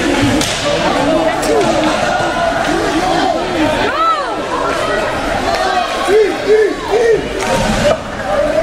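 Spectators in a hockey arena shouting and calling out over steady crowd chatter, with short rising-and-falling yells and a run of three near the end. A few sharp knocks are heard in between.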